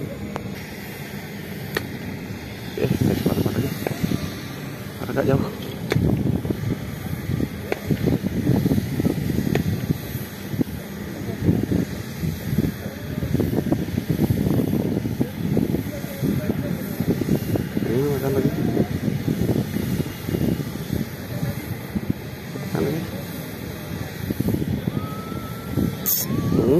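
Indistinct voices talking, unintelligible, over steady outdoor background noise.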